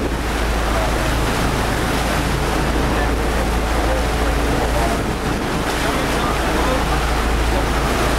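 Steady wind buffeting the microphone over a sportfishing boat running offshore: an even engine drone and water rushing past the hull.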